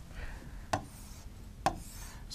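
Two sharp taps on an interactive touchscreen board, about a second apart, as a pen tool is picked and drawing begins.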